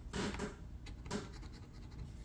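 A metal scratcher coin scraping the coating off a lottery scratch-off ticket in short, uneven strokes.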